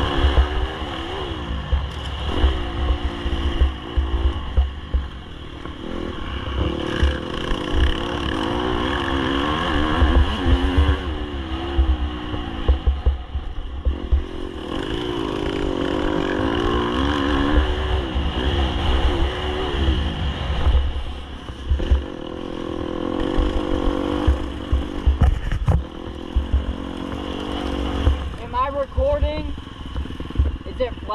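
Dirt bike engine revving up and falling back over and over as the bike is ridden hard around a motocross track, with heavy wind rumble on the helmet-camera microphone.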